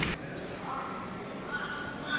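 A loaded barbell dropped onto the lifting platform, its landing and rumble dying away in the first moment. Then a quieter hall background with faint voices.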